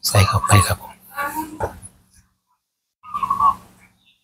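A man's voice in three short bursts, over a steady low hum.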